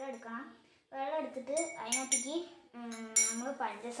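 A metal spoon clinking against a drinking glass of soap solution as it is stirred, a few short ringing clinks between about one and a half and three seconds in.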